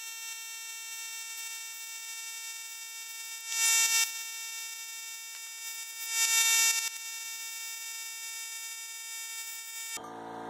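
Two short bursts of hissing compressed air from a homemade glass bead blaster, an air blow gun drawing media from a plastic bottle, fired at a small bronze casting, one about three and a half seconds in and one about six seconds in. A steady whining hum continues underneath.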